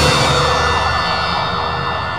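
Closing of a TV crime-news title theme: a loud sustained chord of many steady tones that fades slowly after the beat stops.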